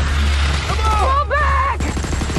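Film-trailer sound mix: a steady low rumble, with shrill, sliding creature cries about halfway through.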